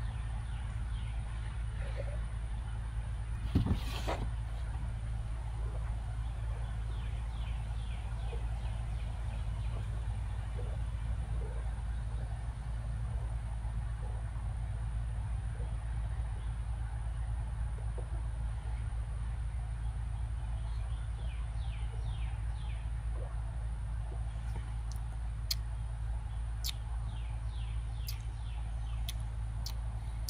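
Quiet backyard ambience: a steady low hum, with a single knock about four seconds in as a glass tasting cup is set down on a table. In the last third come short falling bird chirps and a few sharp clicks.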